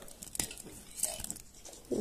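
Aluminium foil wrapper of a giant Kinder chocolate egg crinkling faintly as fingers pick and peel at its crimped edge, with a few sharp ticks of the foil.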